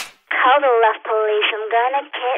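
A voice speaking through a thin, narrow telephone- or radio-like filter, starting a moment in with a short break near the middle.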